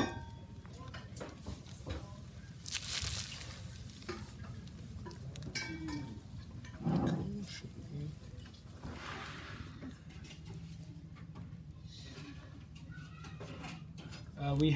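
Quiet rustling of a plastic piping bag and plastic-gloved hands as custard is squeezed through a metal tip into choux cream puffs, in a few short soft bursts over a steady low hum. A brief murmur comes about seven seconds in.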